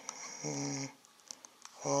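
A man's voice holds a short, steady, drawn-out sound about half a second in, and starts another near the end as he says a letter aloud. In between come a few faint clicks from the keys of an HP 17bII+ financial calculator being pressed.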